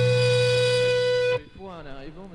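Jazz-rock band holding one long sustained chord over a low bass note, which cuts off abruptly about one and a half seconds in. A voice then speaks quietly.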